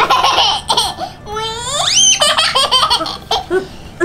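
Laughter in choppy bursts, with a long high shriek that rises steeply in pitch about halfway through.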